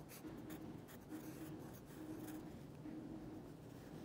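Faint scratching of a Dixon Ticonderoga pencil writing a word in handwriting on a paper worksheet, in short irregular strokes.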